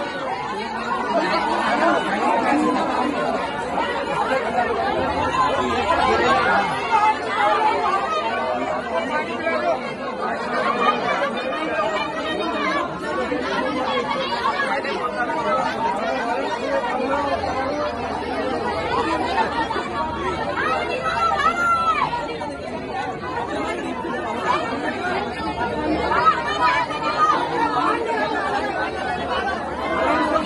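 Crowd chatter: many people talking over one another in a steady, dense hubbub of overlapping voices.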